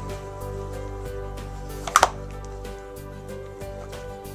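Background music with steady held tones, and one brief sharp slap or snap about two seconds in.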